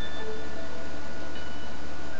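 Instrumental backing music in a gap between sung lines: a few sparse, sustained bell-like notes over a steady low hum.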